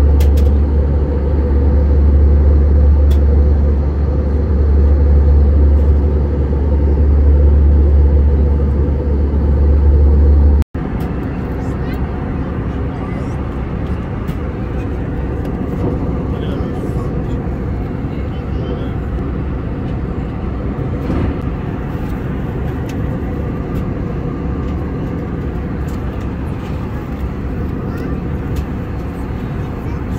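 Airliner cabin noise: the steady rumble and rush of the engines and airflow heard from inside the passenger cabin. A heavy low rumble for the first ten seconds or so breaks off suddenly, then a lighter, even rush carries on.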